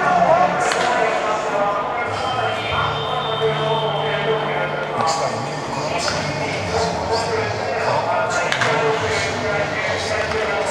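Batting-practice session: a few sharp cracks of a bat hitting pitched balls, spaced a second or more apart, over voices and music echoing through a large indoor stadium.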